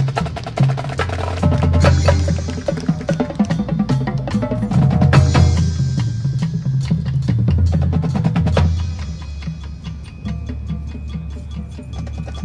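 High school marching band playing its field show, with drums carrying a heavy, busy beat. About nine seconds in the music thins to high, held ringing tones over a steady ticking rhythm.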